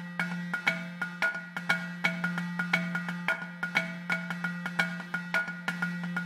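Background music: a bright mallet-percussion tune, a quick, even run of struck notes over a steady held low note.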